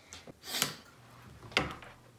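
Two brief knocks about a second apart from kitchen utensils, a spatula and an electric hand mixer, being handled at a glass mixing bowl.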